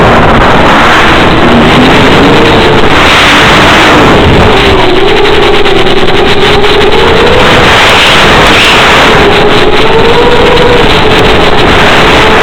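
Electric motor and propeller of a small FPV fixed-wing plane heard through its onboard microphone: a loud, steady buzz whose pitch wavers slightly as the throttle changes, over heavy wind rush.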